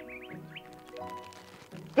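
Quiet background music holding low notes, with a quick run of short, high rising chirps at the start.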